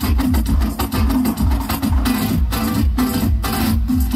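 Flamenco guitar playing fast plucked and strummed passages over a steady low beat of about three pulses a second.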